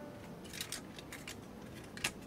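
Faint, scattered clicks and taps of hard plastic as parts of a Transformers Unite Warriors Superion combiner figure are handled and folded, a few separate clicks over two seconds.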